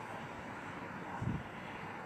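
Steady outdoor background rumble and hiss, with a brief low thump a little over a second in.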